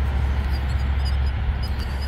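A steady low rumble with a faint hiss above it, unbroken and with no distinct knocks or clicks.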